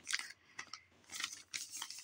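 Plastic shipping mailer rustling and crinkling faintly a few times as it is turned over in gloved hands.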